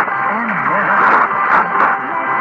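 Long-distance medium-wave AM reception of NHK Radio 2 (Sapporo, 747 kHz) on a Degen 1103 portable receiver with its built-in whip antenna. A weak, narrow-band voice and music come through heavy static and noise, with faint steady whistle tones.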